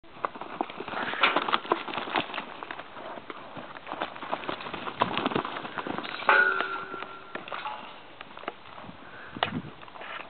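Hoofbeats of a saddled horse cantering on a lunge line over loose, churned dirt, an irregular run of dull strikes. A brief steady tone sounds for about a second just after the midpoint.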